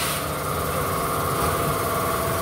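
Steady running hum of an idling engine or similar machine, unbroken throughout.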